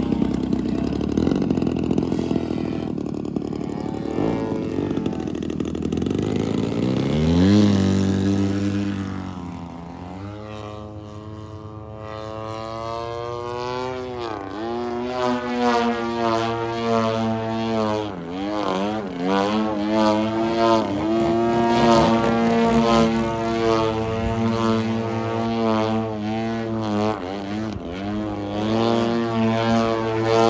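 DLE 130 twin-cylinder two-stroke gasoline engine turning a 28x10 propeller on a 106-inch RC aerobatic plane, still being broken in. It runs low at first, throttles up with a rising pitch about seven seconds in, and then runs in flight with its pitch swinging up and down as the plane manoeuvres overhead.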